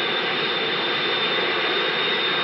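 Jet engines of jet-powered drag-racing trucks running steadily at the start line: an even rushing noise with a thin, steady high whine on top.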